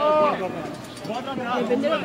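Only speech: people talking in short overlapping phrases, with no other sound standing out.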